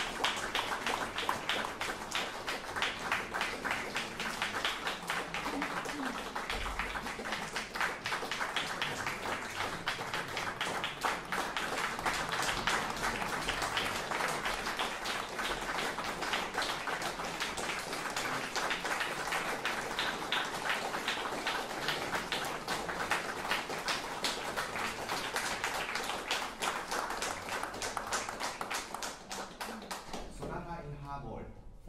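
Audience applauding, a dense steady patter of many hands clapping that fades out near the end.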